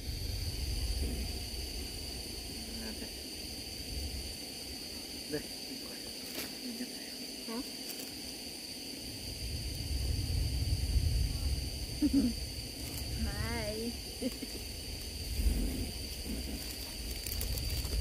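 Single-burner propane camp stove on a one-pound propane cylinder running under a kettle of water, a steady hiss with a low rumble that swells and fades twice.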